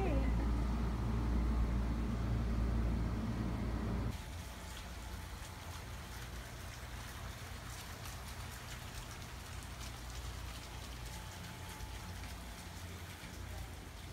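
A low steady hum for the first four seconds. Then, from a sudden cut, water from urn fountains trickles and splashes steadily.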